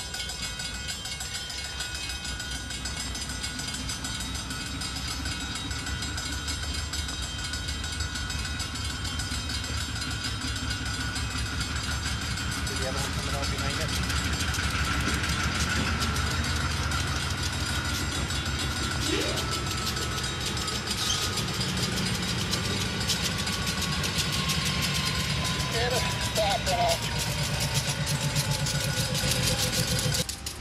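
GE four-axle Dash 8 diesel locomotive running slowly past, its engine rumble growing louder about halfway through as it draws near. A thin high whine slowly falls in pitch over the second half, with a few short squeaks.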